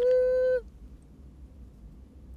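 A woman's short, steady, held vocal tone, like a hum or drawn-out "mm", lasting about half a second and dipping slightly in pitch as it stops, made between tilts of her head to put in eye drops.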